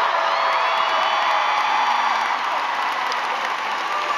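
Large arena crowd cheering, with many high-pitched screams held over the din during the first couple of seconds.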